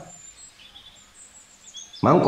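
Faint, high bird chirps, several short calls scattered through, over quiet background hiss.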